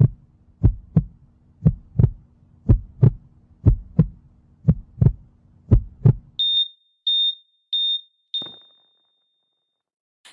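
Heartbeat sound effect: a low double thump, lub-dub, about once a second over a steady low hum, stopping after about six and a half seconds. Then a heart monitor beeps four times at a high pitch. The fourth beep is held as one continuous flatline tone for about a second and a half, the sign that the heart has stopped.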